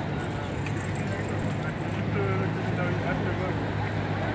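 Voices chatter in a street crowd over a steady low rumble of traffic, which grows a little louder in the second half.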